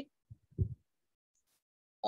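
Near silence, broken by two faint, short, low thuds in the first second.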